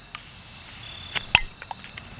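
A crown cap is prised off a glass bottle with a small multitool's bottle opener: two sharp metallic clicks a little over a second in, then a few faint ticks.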